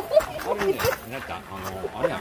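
Speech only: a person's voice talking, with no other distinct sound.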